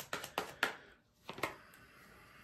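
Tarot cards being shuffled by hand: a quick run of light card flicks and clicks in the first half-second, a couple more about a second and a half in, then near quiet.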